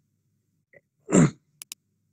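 Mostly quiet, with a man saying a short 'okay' about a second in, followed right after by two quick computer-mouse clicks.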